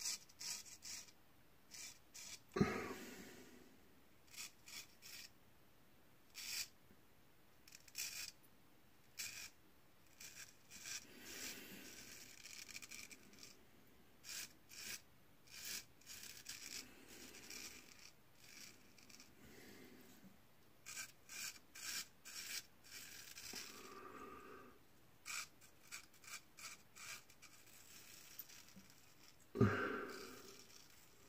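Gold Dollar straight razor scraping through lathered beard stubble: many short, crisp rasping strokes, often several a second. There is one louder thump about two and a half seconds in.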